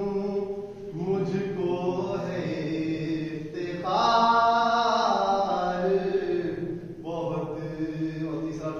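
A man reciting a manqabat, an Urdu devotional poem in praise of Imam Mahdi, in a chant-like melody of long, wavering held notes. He sings alone, with phrases breaking off briefly twice.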